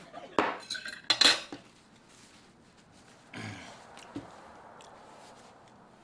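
A few sharp clinks of cutlery and crockery in the first second or so, followed by soft handling noise as a paper napkin is unfolded at the table.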